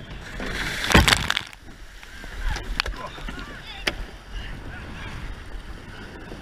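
Surf rushing around a rowing surfboat as it meets a wave, with a loud splash about a second in, then quieter sloshing water and a few sharp knocks of the oars.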